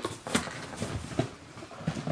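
A few light knocks and handling noises of a package being handled on a table.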